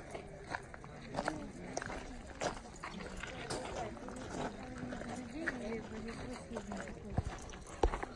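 Indistinct chatter of several people talking, with a few short sharp taps scattered through it; the loudest taps come near the end.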